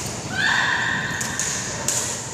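A long, high rubber shoe squeak on the wooden court floor, starting about half a second in and holding for over a second. A couple of sharp racket-on-shuttlecock hits come around it.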